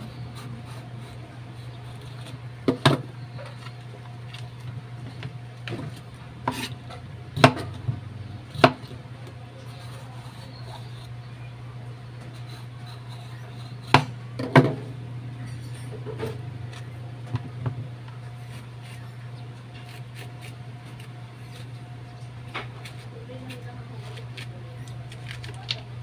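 Kitchen knife cutting a bitter gourd on a bamboo cutting board: sharp knocks of the blade and gourd on the wood, about ten of them at irregular intervals, several loud, with quieter cutting and handling between.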